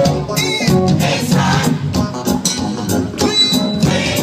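Live gospel choir and band music played loudly over a PA, with drums keeping the beat and voices singing.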